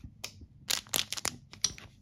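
A shiny foil trading-card pack crinkling as it is picked up and handled, in a quick cluster of sharp crackles about a second in, with a few more near the end.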